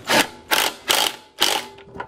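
Ryobi cordless driver spinning a socket in four short bursts, about half a second apart, as it tightens the bolts holding the carburettor onto the lawnmower engine's inlet manifold.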